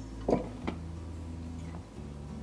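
A few light taps and clinks from a stainless-steel measuring cup as it tips flour into a ceramic mixing bowl, over a steady low hum.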